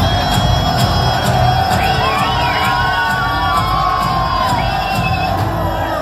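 Audience cheering and shouting over loud music played through the hall's speakers, with a few wavering whoops in the middle.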